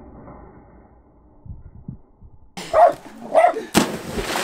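Two short dog barks about three seconds in, followed right away by a sharp smack of a body hitting pool water as the splash begins.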